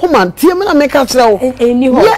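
Only speech: a woman talking loudly and without a break, her pitch rising and falling widely.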